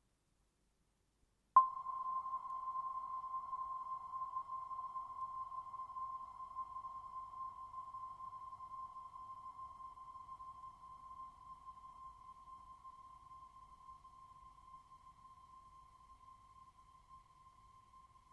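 A single high ringing tone, struck once about a second and a half in after silence, holding one pitch and fading slowly away.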